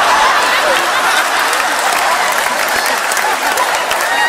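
Large theatre audience applauding steadily, with a few voices mixed in.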